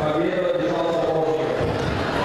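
A voice calling out in drawn-out, chant-like held notes over crowd chatter in a sports hall.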